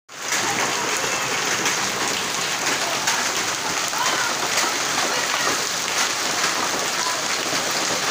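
Heavy rain mixed with hail: a steady, loud hiss of the downpour, with scattered sharp ticks of hailstones striking.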